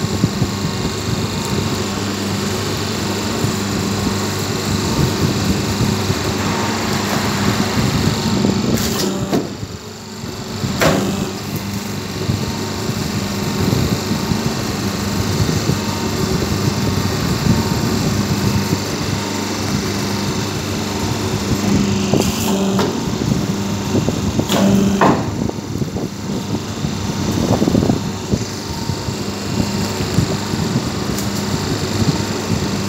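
Semi-automatic hydraulic double-die paper plate machine running with a steady hum. A few sharp clacks come as the press works, two about a third of the way in and two more past two-thirds.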